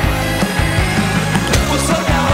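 Rock band playing an instrumental passage, with drums keeping a steady beat under bass and guitar.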